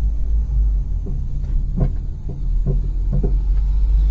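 Car driving on an unpaved road, heard from inside the cabin: a steady low rumble with a few faint knocks.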